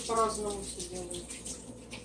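A voice trailing off with a slightly falling pitch in the first second, then a faint steady background hiss.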